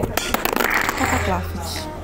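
A smartphone falling and clattering down, a quick run of sharp knocks in the first half second, after the towel under it was pulled away; its screen or camera breaks in the fall. Background music and a voice follow.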